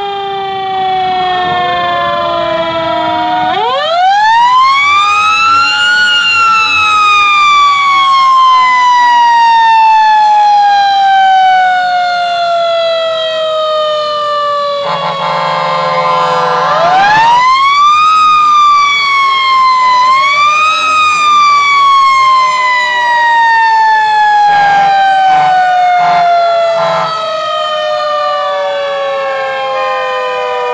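Fire truck siren winding up to a high wail and then falling slowly. This happens twice: a rise about four seconds in with a long fall, then a rise about seventeen seconds in, a short dip, another rise and a long fall to the end. Other sirens in the convoy sound fainter underneath.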